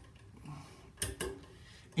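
A couple of short, sharp metal clicks about a second in, as a socket extension is fitted onto a crow's-foot wrench.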